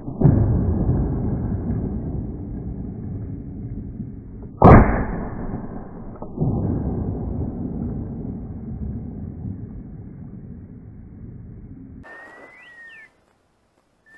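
Shotgun fired once about five seconds in, a sharp loud crack followed by long rolling echoes off the valley sides; the echoes of an earlier shot are still rolling at the start. The sound cuts off abruptly near the end.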